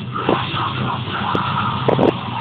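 Loud, dense heavy metal (deathcore) music: distorted guitars with sharp, irregularly spaced hits.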